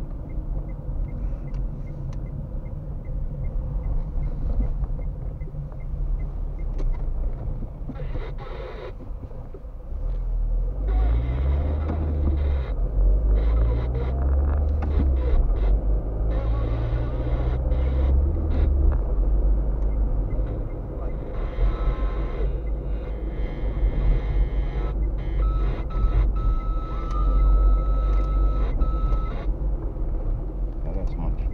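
Car heard from inside the cabin while driving: steady engine and road rumble, with the engine note rising several times about a third of the way in as it accelerates through the gears. A steady high electronic beep sounds for a few seconds near the end.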